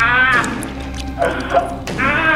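A man's high-pitched, wavering whimpering cries of strain, two of them, over steady low background music.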